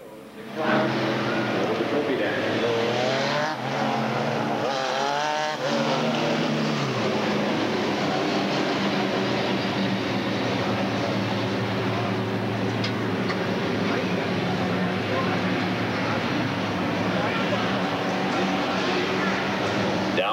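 A pack of super stock race cars' V8 engines running together in a steady, loud drone as they circle the track, starting suddenly about half a second in.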